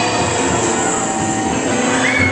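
Haunted Mansion Doom Buggy ride vehicles moving along their track: a steady mechanical rumble with high, thin squealing tones.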